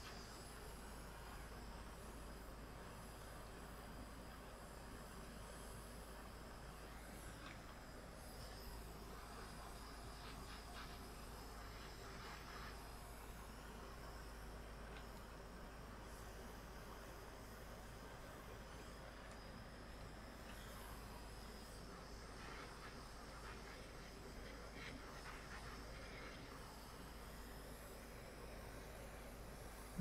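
Quiet, steady hum and hiss of a small electric desk fan running, with a few faint soft handling sounds.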